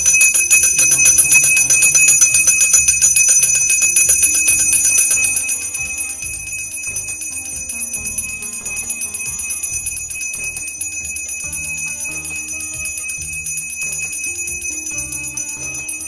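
A Hindu puja hand bell (ghanti) rung rapidly and continuously during worship, a fast, even ringing. It is loud for the first five seconds or so, then rings on more softly. Music with changing low notes plays underneath.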